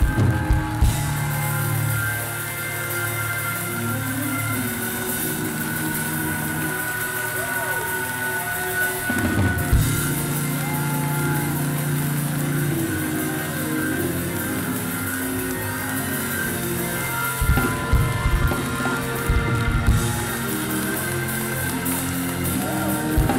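Band music with drum kit and sustained keyboard chords, the drums hitting harder near the start and again near the end.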